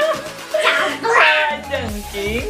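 Voices talking and exclaiming over music.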